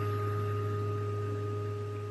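A steady low hum with fainter, thin, higher steady tones above it, slowly fading.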